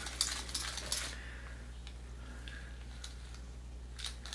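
Metal blades and finger plates of a bladed leather prop glove clinking against each other as the hand moves and the fingers flex: a quick run of light clicks in the first second, then a few faint ticks.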